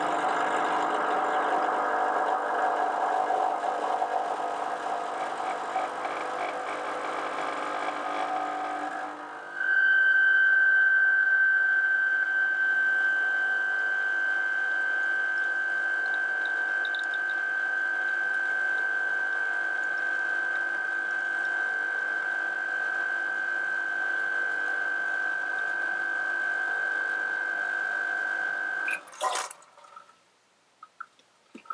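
Expobar Office Lever espresso machine's vibratory pump running through a shot: a rough buzz for the first nine seconds or so, then a louder, steadier hum with a high whine, typical of the pump working against full pressure through the coffee. It cuts off shortly before the end with a brief burst as the lever is lowered.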